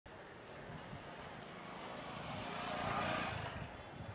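Street traffic with a motor vehicle passing close by; its engine and road noise build to their loudest about three seconds in and then fade.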